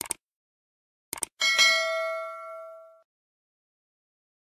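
Subscribe-button sound effect: a short click at the start, quick clicks about a second in, then a bright notification-bell ding that rings out and fades over about a second and a half.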